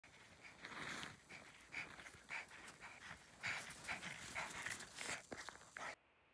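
A dog panting in quick, irregular breaths, about two or three a second, as it bounds through deep snow.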